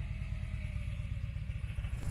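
Touring motorcycle engine running at low revs, a steady low rumble.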